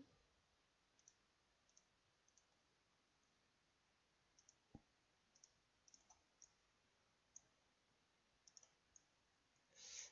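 Faint computer mouse clicks, about a dozen scattered single clicks against near silence.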